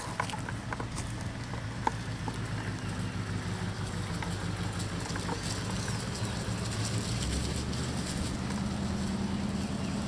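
1940 Cadillac Series 72 limousine's flathead V8 running steadily as the car drives slowly under its own power, its clutch now freed from the flywheel. The engine note drops about seven seconds in and rises slightly near the end. Two sharp clicks come at the very start and about two seconds in.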